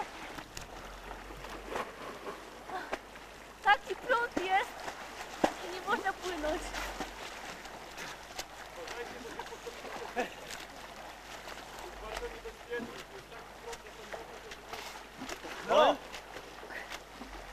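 People's voices calling out across open water: a few short shouts about four seconds in, another around six seconds, and one loud call near the end, over a steady background hiss.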